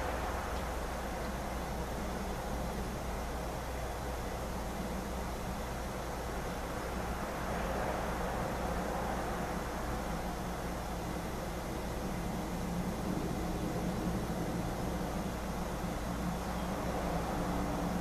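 Steady rushing background noise with a low hum underneath, no speech.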